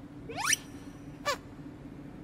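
Cartoon-style comedy sound effects: a quick rising whistle-like glide about half a second in, then a short falling chirp a little past one second, over a faint steady low tone.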